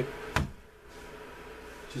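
One sharp knock as a yellow plastic-headed mallet taps a small marking tool held upright on holster leather, denting a stitch-hole mark into it.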